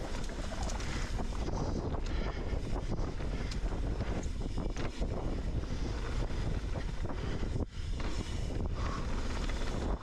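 Wind buffeting a chin-mounted action camera's microphone while riding a mountain bike fast down a dirt trail, mixed with tyre noise on the dirt and frequent small knocks and rattles from the bike. The noise dips briefly once near the end.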